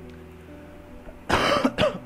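A person coughs twice in quick succession about a second and a half in, loud over soft background music with steady sustained notes.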